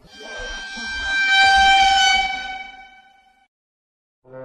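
A dramatic suspense sound effect: one sustained horn-like tone with a low rumble beneath it, swelling up over about a second, holding, then fading out near the end.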